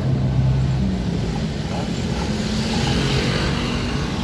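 Street traffic: a motor vehicle's engine running steadily close by, a low hum with no break.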